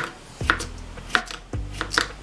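Kitchen knife slicing a cucumber on a plastic cutting board: crisp cuts, each ending in a tap of the blade on the board, about every half second.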